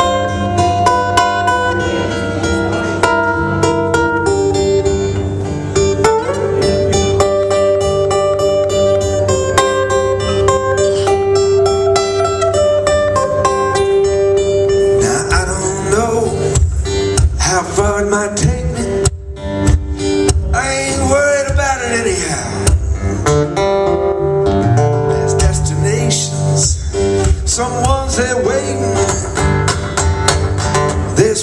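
Two amplified acoustic guitars playing an instrumental break in a folk-rock song: picked notes over chords, with some notes held long, the playing getting busier with bending pitches in the second half.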